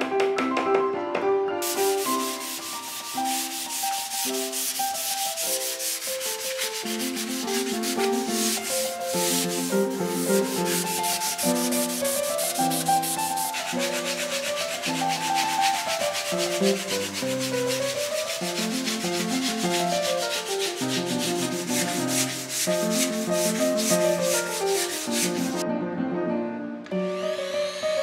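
Sandpaper rubbing on wood in a fast, even scratching that runs almost the whole time, over melodic background music.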